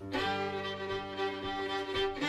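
Two fiddles in an old-time string band starting a tune: a held bowed chord comes in abruptly and rings steadily, with mandolin and banjo in the band.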